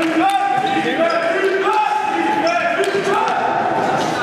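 A sung vocal melody, its held notes stepping up and down in pitch, over a steady backing.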